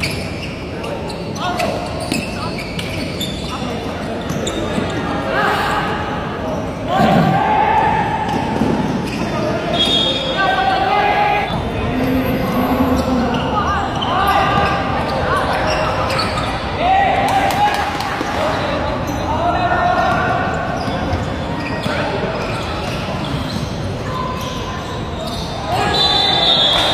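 Basketball bouncing on a hard court, with repeated knocks of play, under people's voices shouting and calling out across the court.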